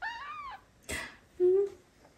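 A baby kitten mewing: one thin call that rises and falls, then a short harsher squeak about a second in. Near the end comes a louder, short, low steady hum.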